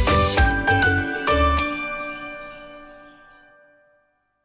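TV programme ident jingle: a bouncy beat with chiming, bell-like notes. The beat stops about a second and a half in and the last chord rings on, fading away.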